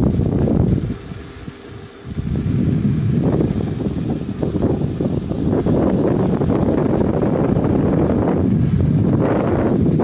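Wind buffeting the microphone of a bicycle coasting downhill at speed, a loud low rumble that drops away briefly about a second in, then returns.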